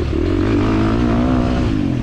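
A 2023 KTM 350 XC-F's single-cylinder four-stroke engine running under throttle, its pitch rising and falling a little as the rider works the throttle.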